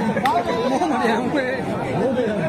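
Crowd of spectators talking, several voices overlapping, with one short sharp knock about a quarter second in.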